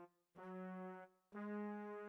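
Sampled brass section from Native Instruments' Session Horns library, played from the keys in the Kontakt 5 sampler. A short held note sounds, then a longer, slightly higher one begins about halfway through.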